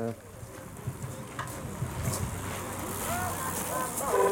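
Faint chatter of bystanders over a steady outdoor background hiss, with a couple of light clicks; the voices grow a little more distinct in the second half.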